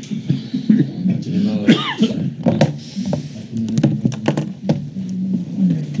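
Low, indistinct voices talking and laughing over one another, with a run of sharp clicks and knocks in the middle, as of things handled near the microphone.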